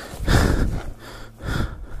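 A person breathing hard, with two heavy breaths in the space of two seconds: out of breath and spent after physical exertion.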